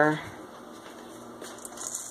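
Faint, steady simmering of yellow split peas in a stainless saucepan on an electric stove, with a few light clicks near the end.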